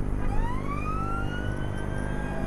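Police siren wailing: one slow rise in pitch that levels off towards the end. It is heard inside a moving police car over the steady drone of engine and road noise.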